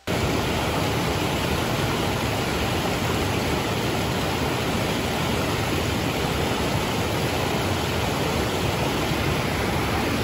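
A small waterfall and rapids in a rocky stream, a steady rush of water that cuts in suddenly at the start.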